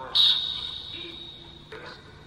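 Ghost-box app on a phone's speaker putting out a sudden burst of distorted, electronic speech-like sound with a high ringing tone that fades over about a second and a half, then a second short burst near the end. The investigators read the fragments as the words 'worse' and 'pissed'.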